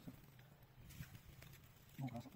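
Near silence: faint outdoor background with a soft tick about a second in.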